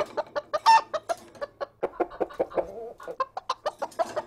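Chicken clucking in a rapid run of short clucks, with one louder squawk about a second in.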